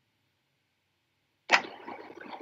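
Silence for about a second and a half, then a man's voice starts abruptly with a hesitant "uh".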